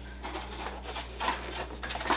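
A few soft knocks and scrapes of a plastic seedling tray being handled and lifted from a metal grow shelf, over a steady low hum.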